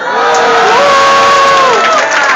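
Audience cheering and screaming loudly, breaking out suddenly right at the start, with one voice holding a long high shout through the middle.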